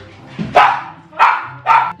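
Three short, sharp yelping laughs from a girl straining under her friend's weight as the friend sits on her shoulders.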